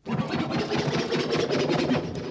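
Loud, dense, rapid scratchy sound from DJ turntables and mixer, starting suddenly right after being switched on and turned up.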